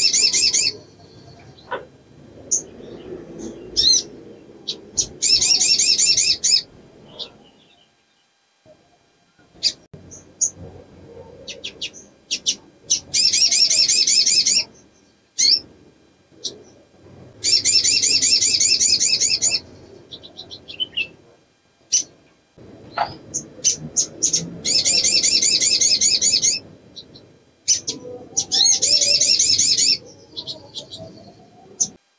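Female olive-backed sunbird calling in breeding condition, the call used to lure males: fast, high trills of about a second and a half, repeated five times several seconds apart, with single short chirps between them.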